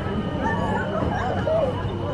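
Indistinct voices of people talking nearby, with a steady high-pitched hum underneath.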